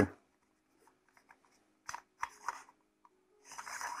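Faint clicks and short rubs from a threaded telescope adapter being handled. A longer scraping rub follows near the end as the pieces turn against each other.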